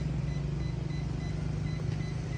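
Steady low mechanical hum like an idling engine, with a fast, even pulsing to it; no distinct clicks or beeps stand out.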